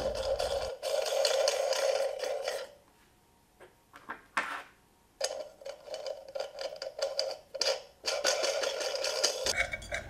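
Steel nuts being spun by hand down a threaded steel rod inside nested terracotta pots: a fast, steady run of fine clicks. It stops for about two and a half seconds, then starts again about five seconds in and runs almost to the end.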